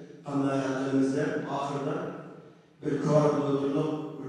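A man speaking into a microphone in long, drawn-out phrases, with a brief pause a little before three seconds in.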